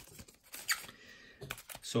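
Faint scattered clicks and light rustles of trading cards and a card-pack wrapper being handled, with a sharper tick about two-thirds of a second in.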